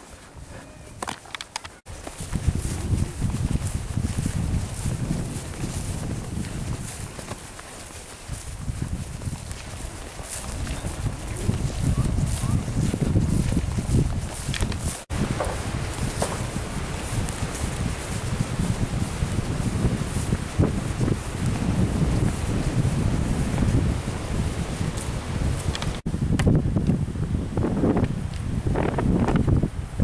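Outdoor walking ambience dominated by a steady low rumble of wind on the camera microphone, broken briefly by cuts about 2, 15 and 26 seconds in.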